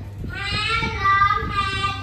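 A class of children's voices chanting an English phrase together in unison, drawn out in a sing-song way.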